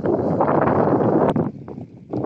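Wind buffeting the phone's microphone: a loud rush for about a second and a half that then drops away, leaving a few faint clicks.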